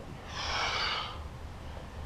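A man's heavy breath during a bodyweight exercise repetition: one rush of air lasting under a second, starting about a third of a second in.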